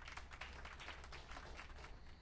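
Faint, light clapping: quick, irregular claps over a steady low hum of room tone.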